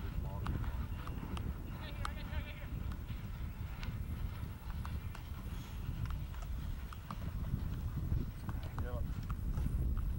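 Hoofbeats of polo ponies galloping over grass turf, with voices in the background.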